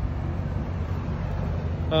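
2021 GMC Yukon SLT idling, heard close to its tailpipe: a steady, low exhaust rumble.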